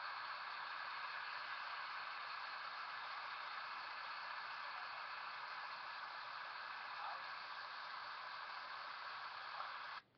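Steady static-like hiss with no distinct events, like the noise floor of the recording.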